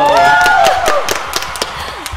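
Rapid hand clapping by two people, with a woman's excited cheer: one long shout that rises, holds and falls in the first second. The sound cuts off suddenly at the end.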